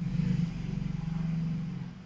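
A low, steady drone that starts suddenly and fades toward the end.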